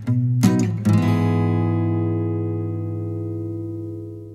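Background music on acoustic guitar: a few strums, then a last chord about a second in that rings on and slowly fades.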